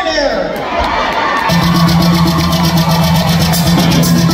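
Live rock band coming in about a second and a half in, with a held low note under a steady drum beat. Before it, crowd noise in the hall.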